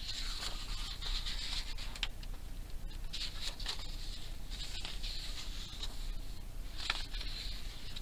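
Book pages being leafed through by hand: a continuous dry paper rustle with several crisp flicks as pages turn over.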